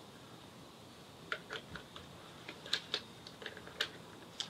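Light plastic clicks and taps, scattered irregularly from about a second in, as a smartphone is turned over and refitted in the spring-loaded phone holder on a toy drone's remote controller.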